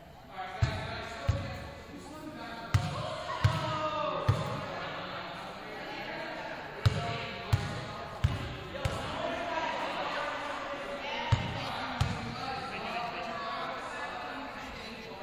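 A basketball bouncing on a hardwood gym floor, about a dozen thuds at uneven intervals, some in quick pairs, under voices chattering in the echoing gym.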